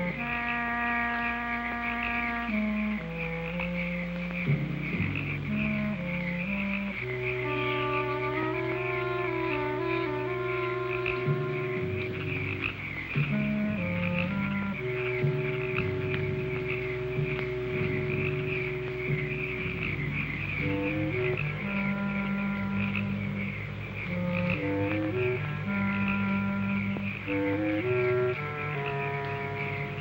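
A steady chorus of frogs calling, with slow background music of long-held notes playing over it.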